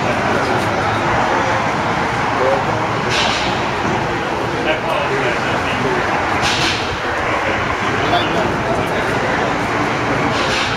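Steady outdoor background noise like passing traffic, with indistinct voices. There is a short hiss about three seconds in and another past six seconds.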